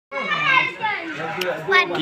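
Voices talking and calling, with children's voices among them.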